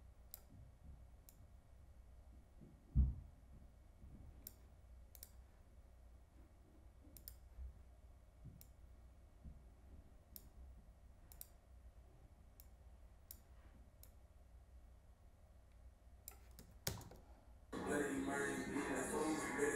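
Faint, sparse clicks from a computer pointing device as colour-grading sliders are adjusted, over low room hum, with one low thump about three seconds in.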